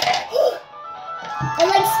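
A child's voice, half-singing a line with held notes about a second and a half in, after a short lull.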